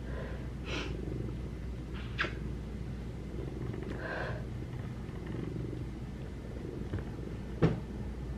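Domestic cat purring close to the microphone, a steady low rumble, with a few brief soft sounds along the way and a short sharp tap near the end.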